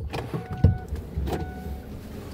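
An electric motor of a Kia Carnival Hybrid's power-operated cabin equipment running with a low hum, with two short electronic beeps about a second apart and a knock near the first.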